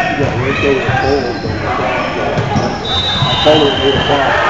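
Volleyball players' voices calling and shouting during a rally, with short high sneaker squeaks on the hardwood court, echoing in a large gym.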